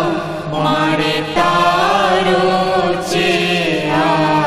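Voices chanting a Hindu aarti hymn together in a steady, sustained devotional chant.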